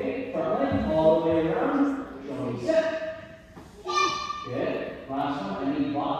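Indistinct voices talking in a large room, including a higher-pitched voice about four seconds in.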